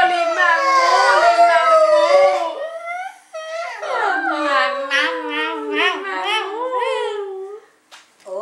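Loud howling calls, several voices overlapping at different pitches and gliding up and down, then, after a brief break, a quick run of short rising whoops.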